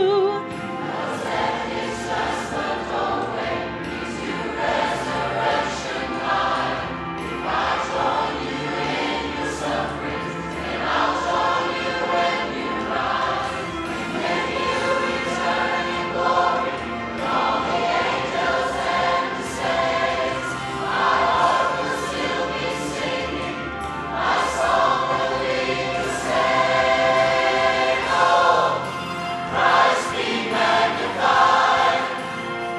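Mass community choir of men and women singing a worship song together in phrases that swell and ease off.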